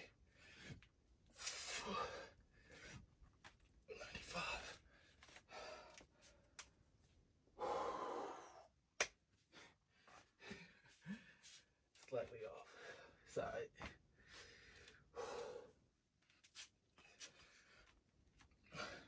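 A man breathing hard between sets of push-ups, with loud breaths and gasps every few seconds. A single sharp click comes about 9 s in.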